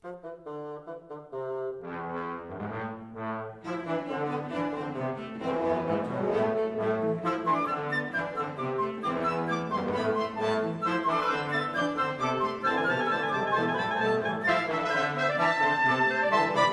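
A small ensemble of brass, woodwind and string instruments playing a light classical-style passage together, sparse at first and filling out about four seconds in as more instruments join.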